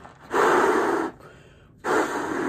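A balloon being blown up by mouth: two long puffs of breath blown into it, about a second and a half apart, with quieter breathing in between.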